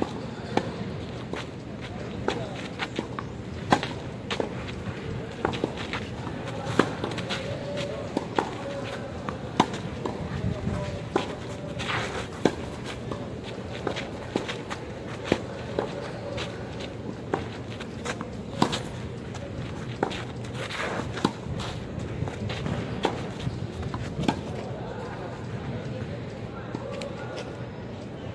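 Tennis ball being rallied back and forth on a clay court: sharp racquet-on-ball hits about every one to one and a half seconds, with quieter bounces and shoe scuffs between them.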